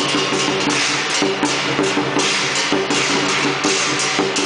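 Live lion dance percussion: a large Chinese lion dance drum beaten in a fast, steady rhythm, with cymbals clashing continuously and a gong ringing.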